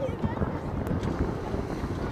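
Wind buffeting the camera's microphone: an uneven low rumble that rises and falls without pause, with faint voices of players and spectators in the distance.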